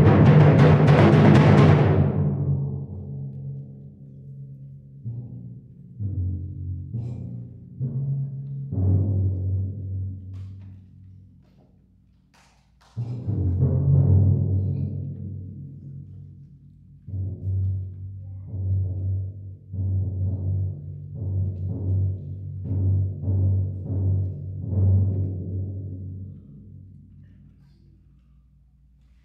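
Timpani played solo: a loud roll fades away, then single low, pitched strokes and short figures ring and decay. A heavy stroke comes about halfway through, and a last run of strokes dies away near the end as the piece closes.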